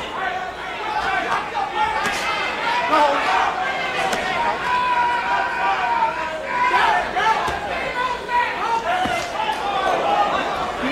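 Ringside crowd at a boxing match, many voices shouting and talking without a break, with a few dull thuds of gloved punches landing.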